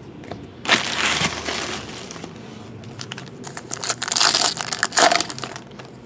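Foil trading-card pack wrapper crinkling and tearing in the hands, in two bursts of about a second each.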